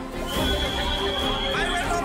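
A steady high-pitched tone held for about a second and a half, over a low background of music and crowd noise.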